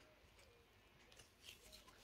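Near silence: room tone, with a few faint soft ticks in the second half.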